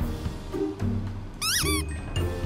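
Background music, with a domestic cat giving a short meow about a second and a half in: a quick run of rising-and-falling chirps.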